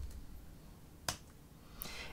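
A single short, sharp click about a second in, against faint room tone.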